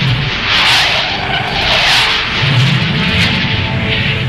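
Fighter jet engine noise rushing and swelling twice, over background music with sustained tones.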